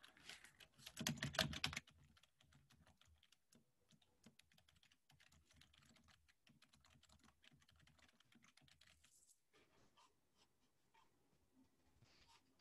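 Typing on a computer keyboard: a quick, louder run of key clicks in the first two seconds, then lighter scattered keystrokes that stop about three-quarters of the way through.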